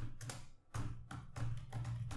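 Computer keyboard being typed on: an uneven run of quick keystroke clicks, with a short pause about halfway through.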